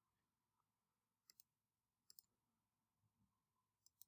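Near silence with faint computer mouse clicks: two quick pairs about a second apart, and one more click near the end.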